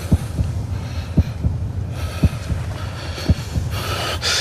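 Slow heartbeat sound effect in a dramatic score: a low thud about once a second, four in all, over a steady low hum.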